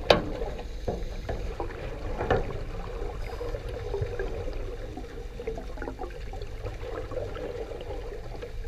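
Underwater sound picked up by a camera below the surface: a steady low rumble and churning water, with a sharp knock just after the start and a fainter one a couple of seconds later.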